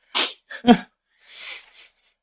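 A man's short, breathy burst of laughter, then a quick 'yeah' and a softer hissing exhale.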